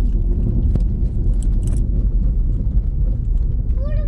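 Steady low rumble of a car driving, road and wind noise heard from inside the cabin, with a few faint clicks about a second and a half in.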